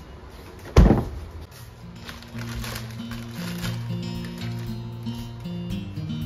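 Refrigerator door shutting with a single thud about a second in. Soft background music with steady notes begins about two seconds in and runs on.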